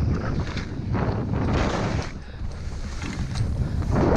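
Wind buffeting a GoPro's microphone during a fast ski descent, with skis hissing and scraping through snow in repeated swells as the skier turns.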